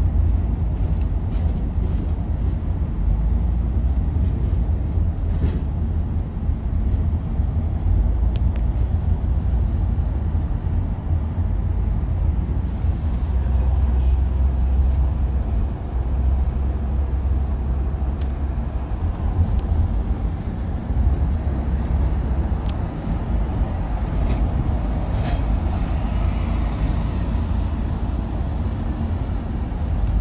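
Steady low rumble of road and engine noise heard inside a car's cabin while driving on a freeway.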